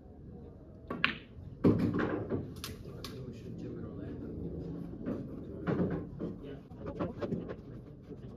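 A snooker shot: the cue tip strikes the cue ball with a sharp click about a second in, then a louder knock of ball on ball follows just over half a second later. Low voices and a few smaller clicks carry on afterwards.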